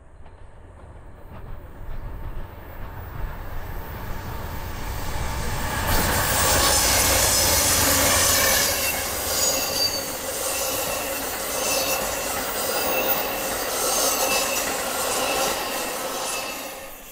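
Amtrak Southwest Chief passenger train of bilevel Superliner cars rolling past close by. It grows louder over the first six seconds, then runs as a steady rumble of steel wheels on rail with thin high wheel squeals. It begins to fade near the end as the last car goes by.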